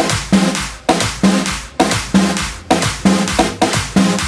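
Background music with a heavy drum beat, about two hard hits a second.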